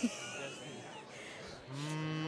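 A man's low, steady hum ("hmmm"), held for about a second, starting about one and a half seconds in, as he thinks before answering. Before it there is only faint background noise.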